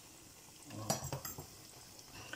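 Akara bean fritters deep-frying in hot oil in a steel pot, a faint steady sizzle. About a second in come a few light clinks of a utensil against the pot.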